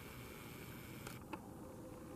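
Faint steady hiss of a camera's own microphone, with a sharp click about a second in and a short blip just after, as the camera's lens zooms in.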